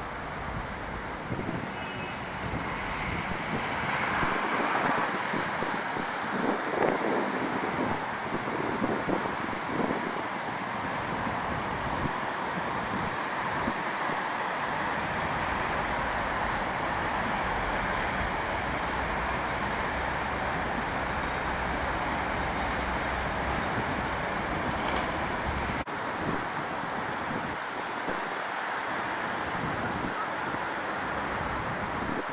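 Steady road traffic on a busy multi-lane city street heard from above: a continuous wash of tyre and engine noise from passing cars, louder for a few seconds in the first third.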